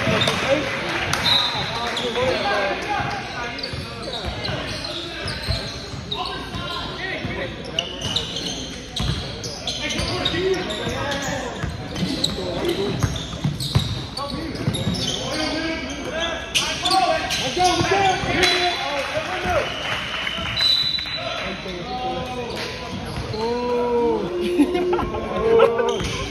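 Basketball game on a hardwood gym floor: a ball being dribbled in repeated thuds, short high sneaker squeaks, and indistinct shouts from players and people courtside, all echoing in a large hall.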